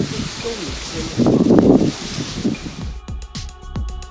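Wind buffeting the microphone outdoors, with indistinct voices. About three seconds in, electronic background music with a steady beat starts.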